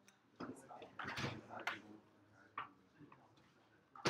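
Scattered light clicks and knocks from people moving and handling things, with faint murmuring voices in the background.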